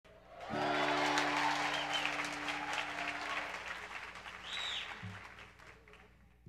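Concert audience applauding and cheering, with a couple of shrill whistles, the applause slowly dying down. An acoustic guitar chord rings under it about half a second in, and a single guitar note sounds about a second before the end.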